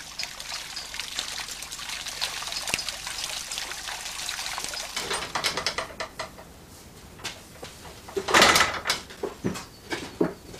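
Water trickling and pouring through a water-driven pendulum clock, with scattered irregular clicks. The trickle thins out about halfway through, and a louder burst of rushing noise comes near the end.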